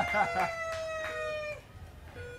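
A woman's long, high held cry of excitement that slowly sinks in pitch and breaks off about a second and a half in. Under it, the spinning Price Is Right wheel clicks as its pegs pass the pointer, the clicks coming further apart as the wheel slows.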